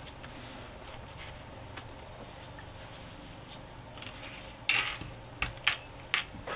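Hands handling paper and small craft pieces on a cutting mat: soft rustling and rubbing, then a few light clicks and taps near the end.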